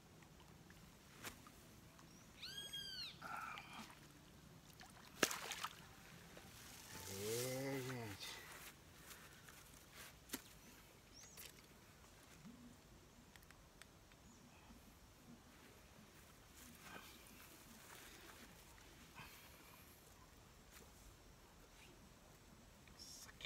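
Quiet moment while a carp is being landed, broken by scattered sounds: a high rising-and-falling squeal about three seconds in, a sharp click a couple of seconds later, and a man's drawn-out wordless exclamation around seven seconds in, then faint ticks.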